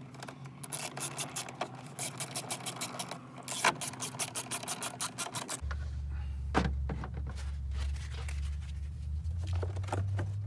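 Quick, uneven clicking of a hand tool turning the lower airbox's mounting bolt into its grommet. About halfway through this gives way to a low wind rumble on the microphone, with a few knocks of plastic parts being handled.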